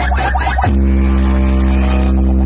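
Loud, steady bass drone from a 'humming' DJ dance mix played through a large truck-mounted roadshow speaker stack. A busier, rhythmic synth layer cuts off about two-thirds of a second in, leaving the held low tone.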